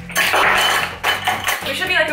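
Ice cubes clattering into a copper mug as they are dropped in by hand from a plastic bag of ice, for about the first second.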